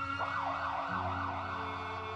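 Ambulance siren: a rising wail, then a fast up-and-down warble of roughly three sweeps a second that fades in the second half, over a steady low hum.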